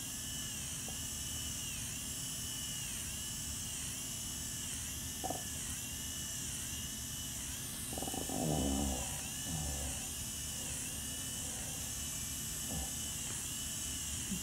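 Motorized FUE extraction punch running continuously as a steady high-pitched whine, its pitch wavering in a regular cycle about every two-thirds of a second while it cores out donor grafts. A brief low sound rises over it about eight seconds in.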